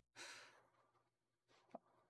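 Near silence, with a faint breath out, like a soft sigh, just after the start and one tiny click near the end.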